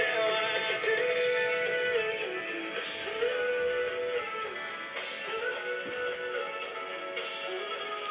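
Music from an FM broadcast station, demodulated and played through the monitor speaker of a Motorola communications system analyzer tuned to 100.0 MHz. The station is running a bit hot, its deviation on the high side.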